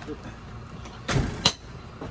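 A dull knock and then a sharp clack about a second and a half in, from the rear compartment of an ambulance while a patient's stretcher is being loaded.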